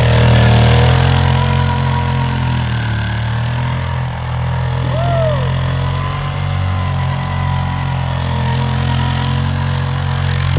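Honda Fourtrax 300 ATV's single-cylinder engine running at fairly steady high revs while the quad slides and spins through snow, loudest in the first second as it passes close. A brief high, falling squeal sounds about halfway through.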